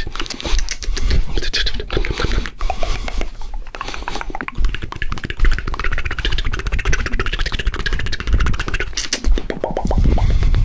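Fast, aggressive ASMR mouth sounds made right at a binaural microphone: a quick, unbroken string of wet clicks and pops, with a low rumble underneath.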